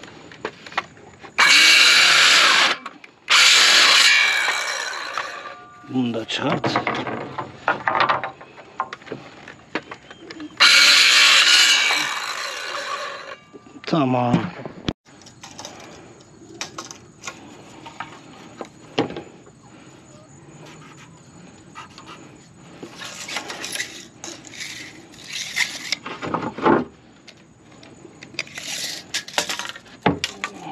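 Circular saw cutting through softwood boards in three loud cuts within the first dozen seconds, each followed by the blade spinning down with a falling whine. Quieter, intermittent handling sounds follow.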